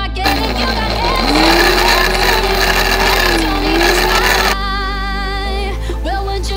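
Electric blender grinding red peppers and onion. The motor spins up with a rising whine, runs for about four seconds with a brief dip in pitch near the end, then stops. Background music plays throughout.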